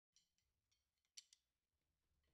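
Near silence with a few faint, irregular clicks, the sharpest two coming about a second in: drumsticks handled lightly before playing starts.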